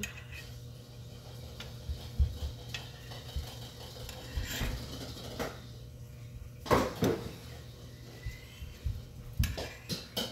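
Metal cookware and utensils clinking and knocking several times, the loudest clatter about seven seconds in, over the steady low hum of the kitchen range fan.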